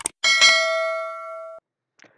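A mouse-click sound effect, then a notification bell dings: a bright, ringing chime struck about a quarter second in and again just after, fading and cutting off abruptly about a second and a half in. It is the sound effect of a subscribe-button animation.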